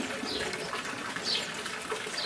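A bird calling: short, high notes falling in pitch, about three in two seconds, over a steady background hiss.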